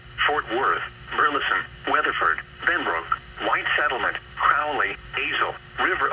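Computer-synthesized NOAA Weather Radio voice reading out a severe thunderstorm warning through a scanner's speaker, word after word with short gaps, over a steady low hum.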